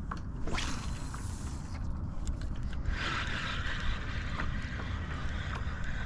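Spinning reel being cranked to retrieve a lure, a steady mechanical whir with small faint clicks from about halfway through. It sits over a constant low rumble of wind on the microphone, with a brief hiss about half a second in.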